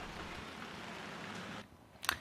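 Steady rain falling, an even hiss that cuts off about one and a half seconds in.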